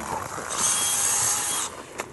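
A harsh, hissing scrape that starts about half a second in and stops abruptly after a little over a second.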